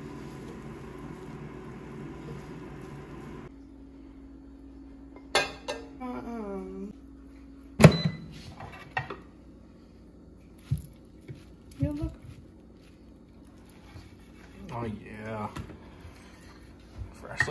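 Kitchen cooking sounds: a spoon stirring rice in a metal pot over a steady hum, which stops abruptly about three and a half seconds in. Then come a few sharp knocks and clicks, the loudest about eight seconds in, and a knife cutting cooked chicken on a wooden cutting board. Short voice-like sounds come in between.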